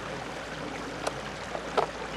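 A fixed-blade bushcraft knife is pushed into its leather belt sheath: a sharp click about halfway through, then a short scrape near the end, over a steady rushing background noise.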